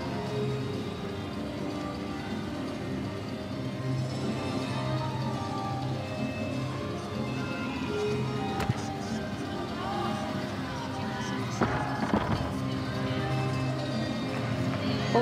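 Arena music playing over a steady hum of the crowd, with a held bass line. A single sharp knock about eight and a half seconds in, and a few fainter knocks a few seconds later.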